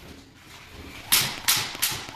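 A jump rope slapping the wooden floor as it is turned, three sharp slaps in quick, even succession beginning about a second in.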